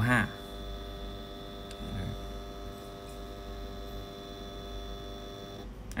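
Stepper motor moving a small linear stage at steady speed during a homing run. It gives a steady whine of several tones at once, which cuts off suddenly near the end as the stage reaches home.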